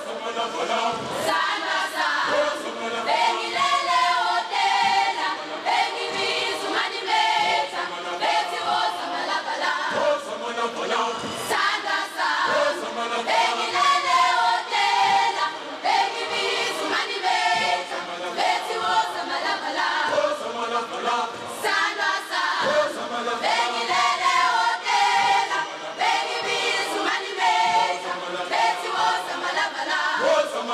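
Mixed choir of men and women singing in harmony without instruments, with sharp percussive hits throughout.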